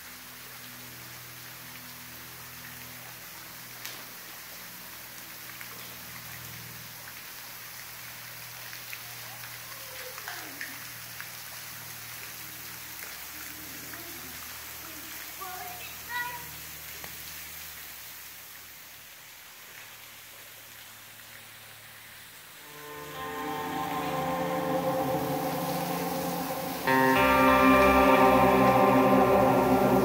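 Thin waterfall spilling down a rock face and pattering onto stones, a steady splashing. About 23 s in, guitar music fades in, and it gets louder near the end.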